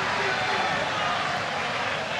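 Steady hiss of heavy rain falling on the stadium and pitch, with indistinct voices shouting.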